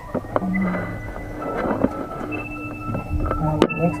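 People's voices over steady background music, with one sharp knock a little before the end.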